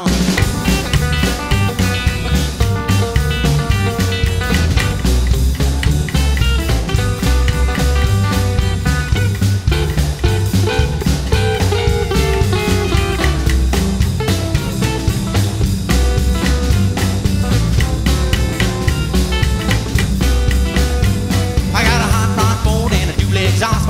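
Instrumental break of a rock and roll song: a guitar plays the lead over a steady drum beat, with no singing.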